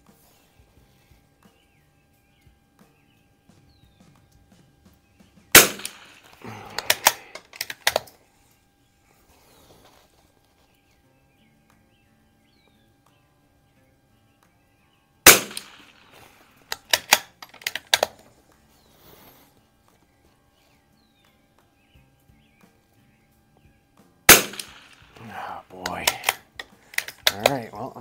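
Three shots from an Anschutz 64MP .22 rimfire bolt-action rifle, about ten seconds apart, each a single sharp crack. After each shot comes a run of small clicks over the next two seconds or so as the bolt is worked to eject the case and chamber the next round.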